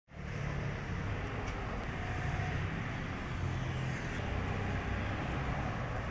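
Steady city street traffic noise: a low rumble of passing cars.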